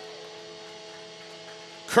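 A steady hum made of several held tones, even throughout, over faint background noise.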